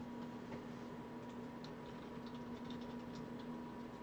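Faint, irregular light clicks over a steady low electrical hum.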